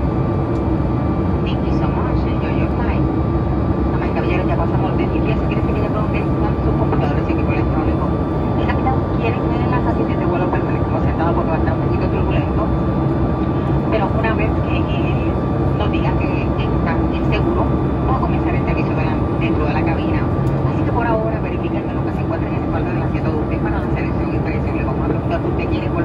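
Cabin noise of a Boeing 737 MAX 8 in flight: the steady drone of its CFM LEAP-1B turbofan, with a steady hum and a higher held whine, heard from a seat beside the engine. Voices come and go over it.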